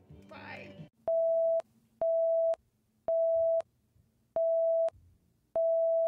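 Five electronic beeps of a single steady tone, each about half a second long and roughly a second apart, like a telephone busy signal.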